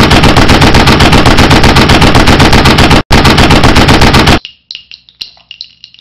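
Machine gun firing long rapid bursts of evenly spaced shots, with a brief break about three seconds in. It stops abruptly, leaving a fainter scatter of clicks and ringing.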